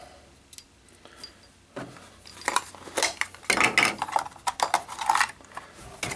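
A small folding metal canister stove being handled and slipped into a hard plastic case: its folded pot-support arms clink and rattle. A few light clicks come first, then from about two seconds in a busy run of clinks to the end.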